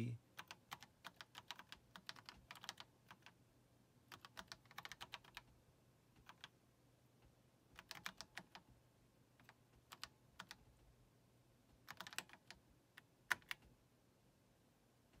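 Faint typing on a computer keyboard: irregular clusters of keystrokes with short pauses between them as a terminal command is typed, ending with one sharper keystroke near the end as the command is entered.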